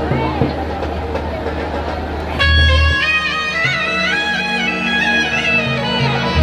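Live instrumental music through loudspeakers: electronic keyboards holding sustained chords, with a bright, bending, ornamented melody line coming in loudly about two and a half seconds in over a low beat, playing ahead of the ragni singing.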